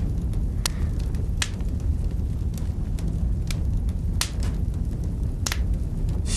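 Steady low rumble with about eight sharp, irregularly spaced clicks on top of it.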